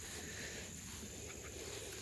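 Quiet outdoor background: a faint, steady hiss with a thin, high, steady drone over it.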